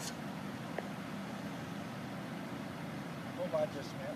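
Steady low outdoor rumble with no clear source, with a short faint bit of a voice near the end.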